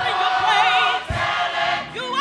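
Gospel choir singing a held chord in full voice, with one voice wavering in vibrato on top; a low thump about a second in.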